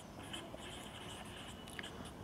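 Faint scratching of a marker pen writing on a whiteboard in short, irregular strokes.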